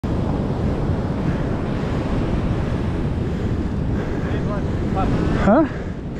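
Wind buffeting the microphone over the steady wash of surf on a beach.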